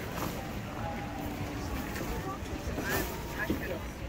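Indistinct chatter of passers-by over a low, steady rumble.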